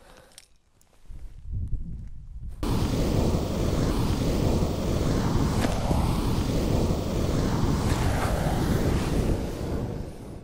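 Homemade flamethrower: a low rumble, then a couple of seconds in a loud, steady rush of flame starts suddenly and keeps burning on a reusable tourniquet, fading near the end.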